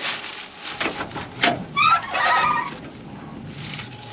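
Front door of a rusty old car being opened: a few latch and handle clicks, then a short squeaky creak from the dry hinges about two seconds in.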